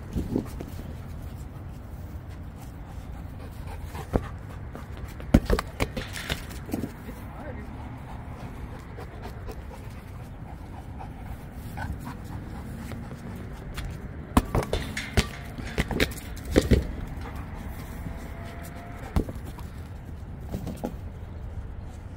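Dogs panting during rough play, with scattered sharp knocks and thuds, several of them bunched together about two-thirds of the way through.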